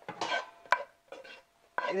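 A wooden spatula scraping vada curry out of a nonstick frying pan into a glass bowl: a few short scrapes, a sharp knock about three quarters of a second in, then fainter scratching.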